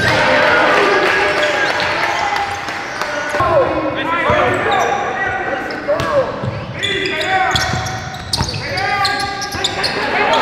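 Live basketball game sound in a large gym, echoing: rubber-soled sneakers squeaking on the hardwood court in short, high chirps, the ball bouncing in sharp knocks, and players' voices.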